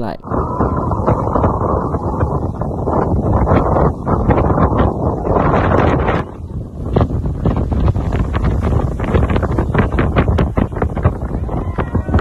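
Loud wind buffeting a phone's microphone, gusting and fluttering, with two brief lulls about 4 and 6 seconds in.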